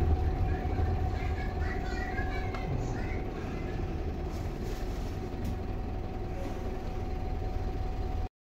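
Interior running noise of a 58-reg single-deck bus on the move, heard from inside the passenger saloon: a steady low engine rumble with a steady whine over it.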